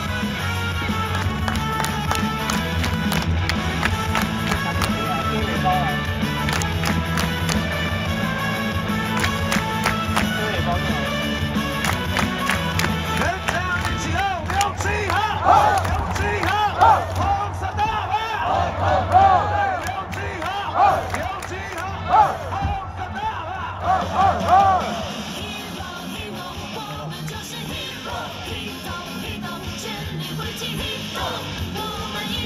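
Cheer music over stadium loudspeakers with a heavy beat. About halfway through, loud repeated chanted calls and clapping come in over it for some ten seconds. After that the bass drops away and lighter music carries on.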